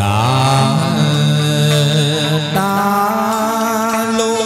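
Chầu văn ritual singing: a singer draws out one long held note that slides up at the start, then moves to a new held pitch about two and a half seconds in.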